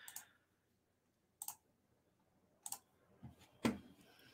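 A few short, sharp clicks spaced about a second apart, with near silence between them and the last one the loudest.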